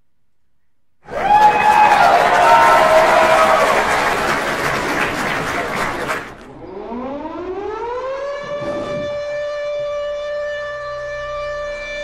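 Show-intro sound effects: a loud noisy burst with falling tones starts about a second in. Around halfway it gives way to a siren-like tone that rises in pitch and then holds steady.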